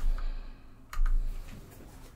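A few light clicks of computer keys, with two low thuds about a second apart.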